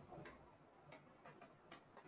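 Faint clicks of a computer keyboard being typed on, about half a dozen separate keystrokes over two seconds.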